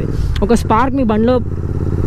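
Royal Enfield Continental GT 650's parallel-twin engine running steadily as the bike is ridden down the road, with a short stretch of speech over it.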